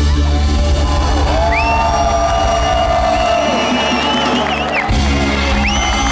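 Live reggae band holding out the closing chord of a song, the low bass sustained and breaking off briefly near the end before coming back in. The crowd cheers and whoops over it.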